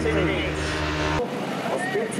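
Racing motorcycle engine on a hill-climb course, its pitch falling as the bike slows for a bend. About a second in, the sound cuts off abruptly and voices follow.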